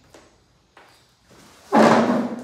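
Faint handling clicks, then near the end a single sharp knock of metal tools on the floor that rings on briefly.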